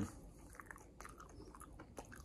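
Faint chewing of a mouthful of crumbly apple cake donut, with scattered soft mouth clicks.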